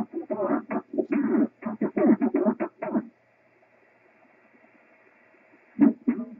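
A distant amateur station's voice on 6-meter single-sideband coming through the transceiver's speaker, thin and choppy, for about three seconds. It then drops to faint receiver hiss, with a short burst of signal just before the end.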